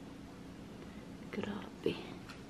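Quiet room tone with a faint steady hum, then a brief soft, whispered voice near the end.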